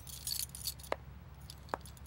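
Faint clicks and light rattling of a hard disk being handled, with two sharper ticks about a second in and near the end, over a low steady hum.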